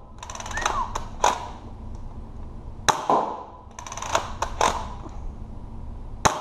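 A Dart Zone pump-action foam-ball blaster being pumped and fired in turn: a rattling pump stroke, then a sharp snap as its strong spring lets go. There are about three shots, the loudest about three seconds in.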